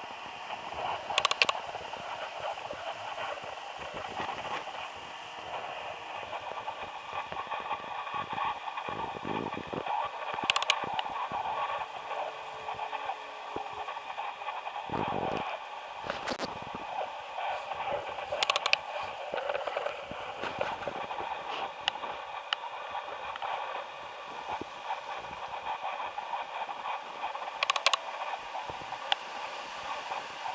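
Wind rustling through the dry yellow leaves of autumn trees, a steady hiss with four brief sharp crackles spread through it.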